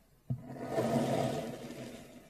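A kitchen knife pressing down through a block of kinetic sand. There is a short knock about a quarter second in, then a steady, grainy crunching as the blade sinks through, slowly fading.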